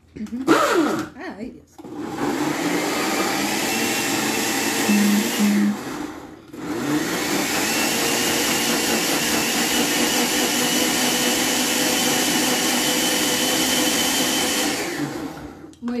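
Oster countertop blender mixing a thick cheesecake batter of eggs, yogurt, cream cheese, sugar and flour. After a short first pulse it runs about four seconds, stops for a moment, then runs again for about eight seconds, its motor whine rising as it speeds up each time, and spins down near the end.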